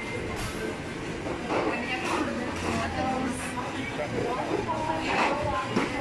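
Busy shopping-mall interior ambience: indistinct chatter of people nearby over a steady low hum.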